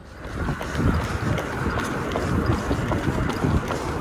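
Wind buffeting the microphone of a handheld camera carried on the move, with irregular soft footfalls on pavement underneath.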